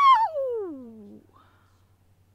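A woman's wordless, high-pitched whine that slides steadily down in pitch over about a second and then stops: an exasperated groan.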